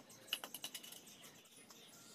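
A quick run of light clicks and taps about half a second in, from hand work with bricks and small tools on a concrete floor.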